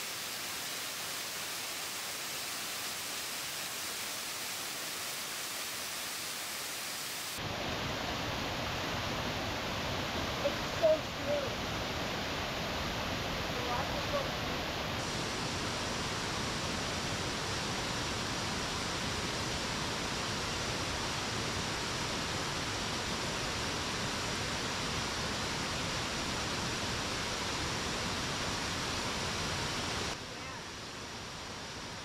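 Waterfall rushing steadily over rock ledges, a continuous hiss of falling water. About seven seconds in it becomes louder and fuller, with more low rumble.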